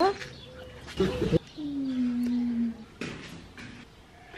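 A puppy whining: a quick rising yelp at the start, then one long whine held for about a second in the middle.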